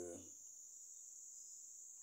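Near silence: a faint, steady high-pitched whine with light hiss, and no other event.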